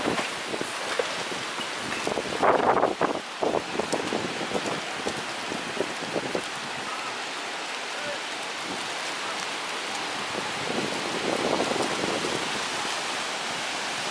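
Heavy rain and gusting wind of a summer storm, a steady hiss with a louder surge about two and a half seconds in.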